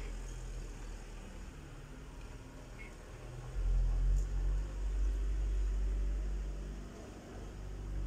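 A low rumble that swells about three and a half seconds in and eases off near the end.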